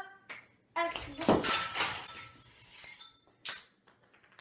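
Glass crashing and shattering about a second in, with tinkling pieces ringing on for a couple of seconds, then another short clatter near the end.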